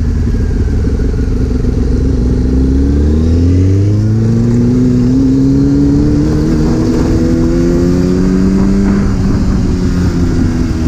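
Sport bike engine heard from the rider's seat, under way in traffic; its pitch climbs steadily as the bike accelerates from about three seconds in, then falls back near the end.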